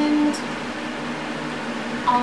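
Steady hum of an electric fan running in a small room, with a short voice sound right at the start.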